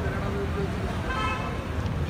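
Large crowd chattering over a steady low rumble, with a short high toot about a second in.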